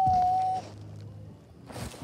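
A child's long, drawn-out, level-pitched "bye" that stops about half a second in, followed near the end by a short burst of rustling noise as the phone is swung about.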